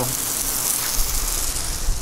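Water jetting from the open brass end of a Pocket Hose Top Brass expandable garden hose, a steady hiss: a high-pressure stream forced through the fitting's quarter-inch opening. A low rumble joins about a second in.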